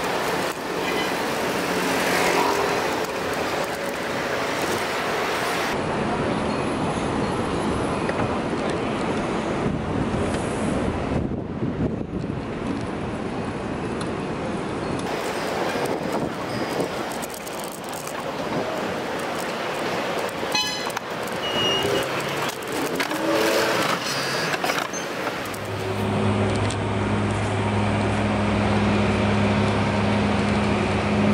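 Street traffic noise with wind rushing over the microphone while cycling along a city street. A quick run of clicks comes about twenty seconds in, and a steady low hum sets in near the end.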